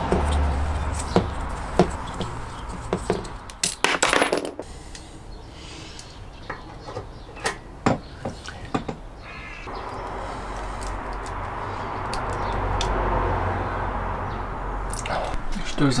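A small hand tube cutter being worked on a gas pipe: scattered sharp metallic clicks and scrapes, with a longer rasping burst about four seconds in.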